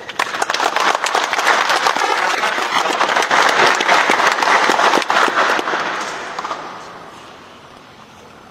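A seated audience clapping, a strong round of applause that holds for about five seconds and then dies away.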